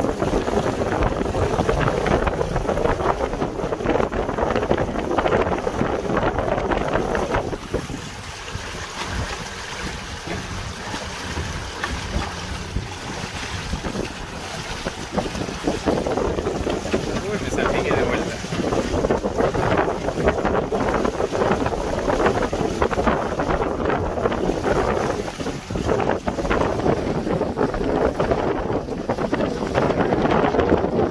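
Strong wind buffeting the microphone over the rush and slap of choppy water against a small trailer-sailer's hull under sail. The wind eases for several seconds about a quarter of the way in, then picks up again.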